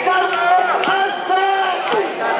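Protest crowd chanting and shouting slogans together over a steady beat of about two strikes a second.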